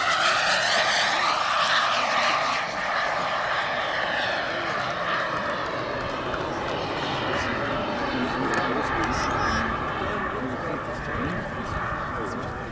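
Model jet turbine engines of a giant-scale radio-controlled F-15 Eagle in flight, a loud jet whine and rush that bends in pitch as the plane passes near the start, then slowly fades.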